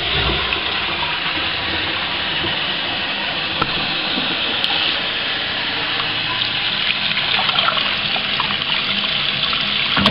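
Toilet cistern flushing after a press of its dual-flush button: a steady rush of water as the cistern empties through the flush valve and the newly fitted inlet valve refills it.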